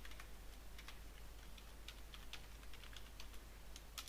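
Faint, irregular clicks of computer keyboard keys being typed.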